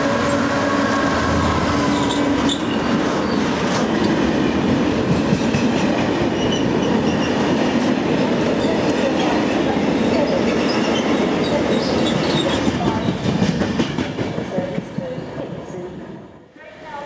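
Diesel-hauled freight train passing close by: first the locomotive's engine, then a long run of loaded box wagons rumbling and rattling over the rails with short high wheel squeals. The sound fades in the last couple of seconds.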